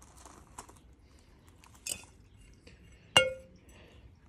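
A single sharp, ringing clink about three seconds in, as the compost scoop knocks against the terracotta flowerpot, with faint rustling and scraping of compost being scooped before it.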